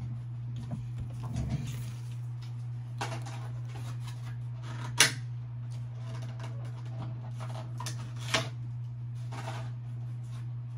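Cardboard and plastic packaging of a Pokémon trading card box being handled: scattered rustles and light taps, with a sharp snap about halfway through, over a steady low hum.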